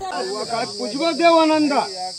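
Steady high-pitched insect drone with a person talking over it until near the end.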